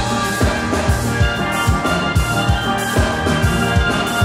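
A steel band playing: many steel pans sounding chords and melody together over a steady kick-drum beat of about two and a half beats a second.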